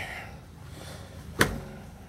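A single sharp click about one and a half seconds in, as a wooden closet door's catch releases and the door is pulled open.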